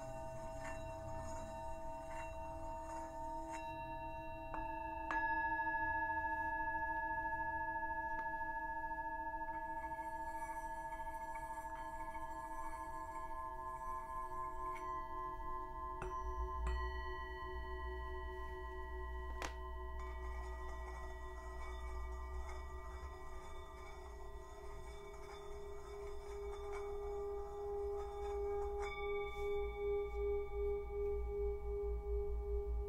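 Himalayan singing bowls struck one after another with a mallet, their ringing tones overlapping and sustaining, with a new strike every few seconds and the loudest about five seconds in. Near the end a lower bowl tone swells with a steady pulsing beat.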